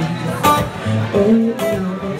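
Acoustic guitar strummed, with two strong strokes about a second apart and the chords ringing on between them.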